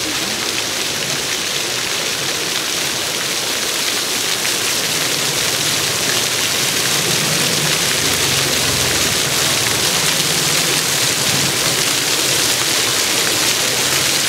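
Ground-level fountain, many small water jets spraying up from the paving and splashing back onto the wet stones: a steady, loud hiss.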